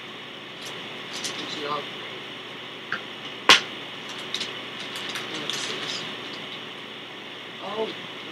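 Plastic mailer package rustling and crinkling as it is handled and opened, with one loud sharp click about three and a half seconds in. A steady hiss from a faulty recording runs underneath.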